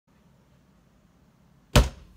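A single short, loud thump about three-quarters of the way through, over a faint low hum.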